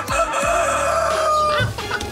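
Rooster-like crowing call from Baba Yaga's hut on chicken legs in a cartoon sound effect: one long held call that stops a little before the end.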